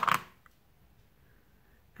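A single short spoken word at the very start, then quiet room tone with one faint click.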